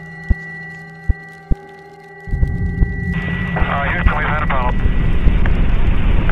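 Ambient electronic music tones with a few sharp clicks, then about two seconds in a loud rocket-launch rumble starts. About a second later, narrow-band radio voice chatter between the spacecraft and Mission Control comes in over it.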